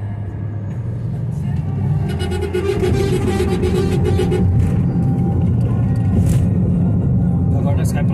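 Steady low rumble of road noise inside a moving car's cabin, with music carrying a voice playing over it, its held notes strongest between about one and a half and four and a half seconds in.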